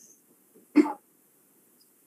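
A single short cough about three-quarters of a second in.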